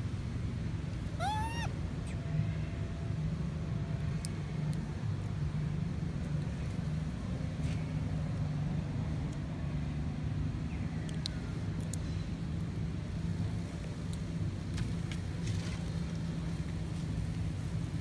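A single short, high squealing call about a second in, typical of a young long-tailed macaque, with a fainter falling call later. Under it runs a steady low rumble.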